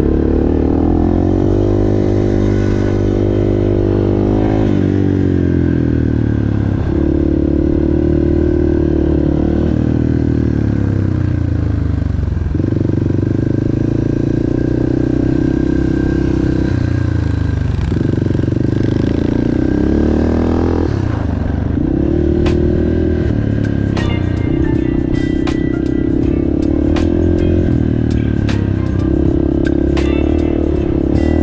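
Four-stroke single-cylinder dirt bike engine running under the rider, its pitch holding steady under throttle and then dipping sharply several times as the throttle is rolled off and on through turns and shifts. Over the last several seconds, rapid sharp ticks and clatter from stones and dirt hitting the bike join the engine.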